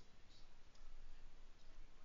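Quiet room noise with a few faint, soft clicks.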